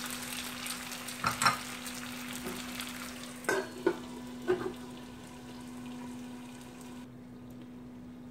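Sliced potatoes sizzling in hot oil in a frying pan. A few metal clinks come about a second in, then a cluster around three and a half to four and a half seconds in as a steel lid is set on the pan. After that the sizzle is quieter and muffled under the lid.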